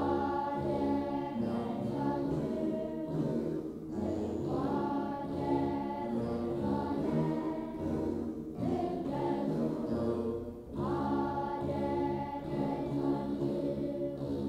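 A children's choir singing an Ethiopian Orthodox mezmur (hymn) in phrases of a few seconds, accompanied by begena lyres.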